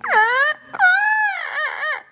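Double yellow-headed Amazon parrot singing loudly in a human-like voice: a falling swoop, a short break, then a second swoop into a held note that ends in a wavering vibrato.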